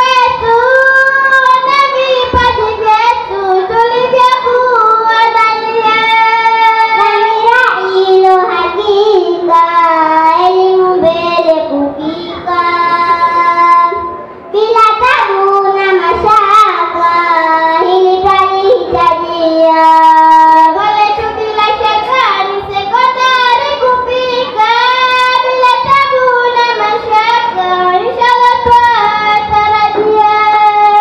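Young girls chanting a Swahili utenzi (verse poem) in turn into microphones, unaccompanied, in long melodic held lines, with a brief break about halfway through.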